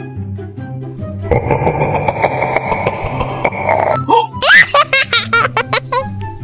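Background music, with a whipped-cream aerosol can hissing steadily for about three seconds, starting a second in. Near the end comes a quick run of short, squelchy sputters as a squeeze bottle of chocolate sauce is pressed.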